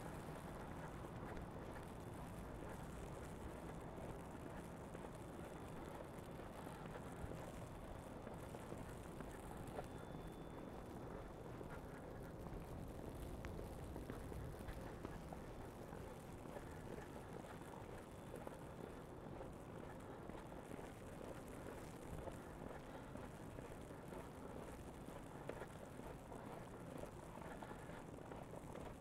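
Faint, steady city ambience on a snow-covered street: a low hum with no distinct events, and soft footsteps in fresh snow.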